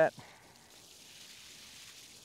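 Faint, steady hiss of a Hoss watering wand's shower spray falling onto potting soil in a plastic tub.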